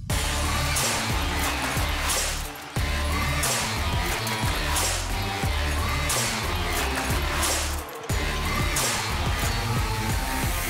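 Theme music of a sports highlights show's title bumper, with a heavy bass beat. It cuts out briefly twice: about two and a half seconds in, and again near eight seconds.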